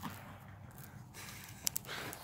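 Faint steady background hiss, then two quick sharp clicks close together near the end: handling noise as the camera is moved.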